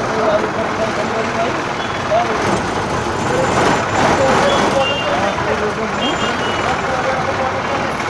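Ashok Leyland Stag minibus running in city traffic, heard from inside the cabin: steady, loud engine and road noise, with voices talking underneath.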